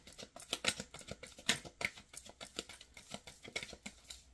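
A deck of tarot cards shuffled by hand, the cards slapping together in quick, irregular clicks several times a second, tailing off near the end.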